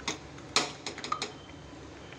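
Thick tomato sambar boiling in an aluminium pot: about six irregular pops and ticks as bubbles burst, the loudest about half a second in.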